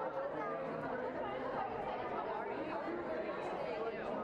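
Background chatter of many people talking at once, a steady murmur of overlapping voices with no single voice standing out.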